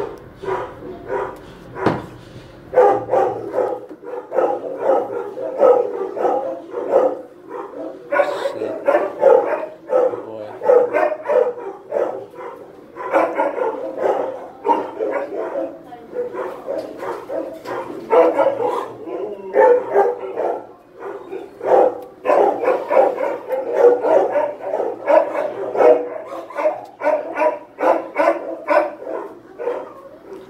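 Many dogs barking continuously in a shelter kennel block, the barks overlapping in a steady, choppy din with short sharp yaps throughout.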